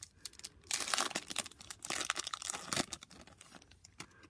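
A Topps F1 trading-card pack's wrapper being torn open and crinkled by hand, a run of crackling rustles from about a second in that dies down near three seconds.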